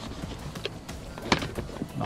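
Tools and fabric shifting as hands handle a loaded tool backpack: a few small clicks and knocks, the loudest sharp knock about a second and a half in.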